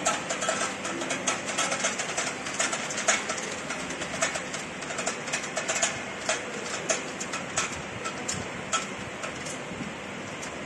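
Small amber glass bottles clinking irregularly against one another and the steel guide rail as a rotary bottle-feeding table turns them, over the table's steady machine hum. The clinks come several times a second and thin out near the end.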